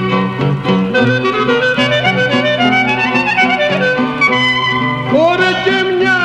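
Clarinet playing a tsamiko dance melody over steady low accompanying notes, from a 1936 Greek folk recording. About five seconds in, a male voice comes in singing with a wavering, ornamented line.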